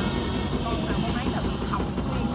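Steady low hum of a small river boat's engine running, with a woman's voice speaking in short bits over it.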